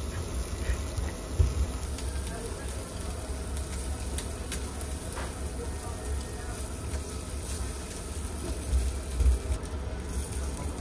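Wagyu slices sizzling on a charcoal tabletop grill's wire mesh, with a few light clicks and a couple of dull knocks from metal tongs handling the meat, over a steady low hum.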